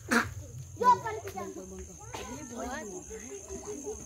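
People's voices talking and calling out, with two louder shouts near the start, over a steady high chirring of crickets.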